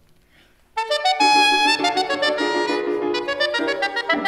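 A straight soprano saxophone comes in after a brief near-silent pause, less than a second in, and plays a fast, loud run of short notes.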